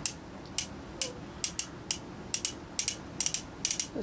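Ruger Blackhawk .357 Magnum single-action revolver's cylinder turned by hand with the loading gate open, clicking round chamber by chamber as each is checked for cartridges. A string of sharp metallic clicks, many in quick pairs.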